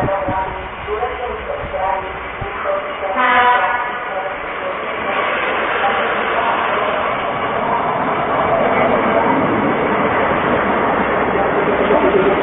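Diesel railbus pulling into the station and passing close by: a short horn-like tone about three seconds in, then its engine and wheel-on-rail noise rise from about five seconds in and stay loud as it goes past.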